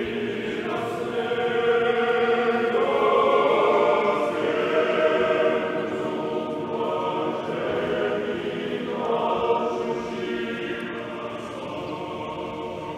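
Orthodox church choir singing unaccompanied liturgical chant in several voice parts, held chords that change every few seconds and grow quieter toward the end.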